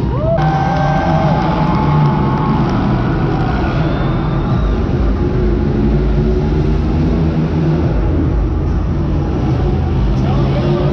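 Monster truck engines running in an arena: a loud, steady, low rumble with no let-up.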